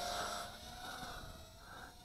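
Faint steady whine of a small brushless racing drone's motors and three-blade props in flight, fading away over the first second.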